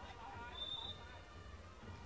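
Faint ambient sound of an outdoor five-a-side football match: distant players' voices over a low hum, with a brief faint high tone about half a second in.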